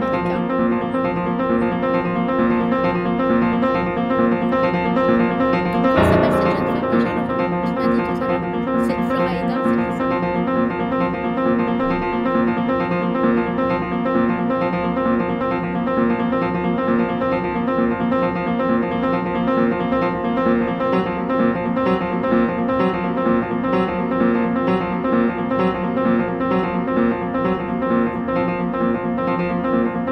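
Recorded harp music playing: many ringing notes that sustain and overlap, with one sharp, louder accent about six seconds in.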